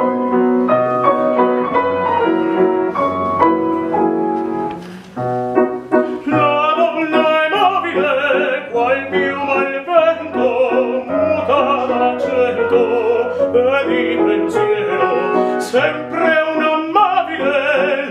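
Grand piano playing an introduction, then a male opera singer comes in about six seconds in, singing with a wide vibrato over the piano accompaniment.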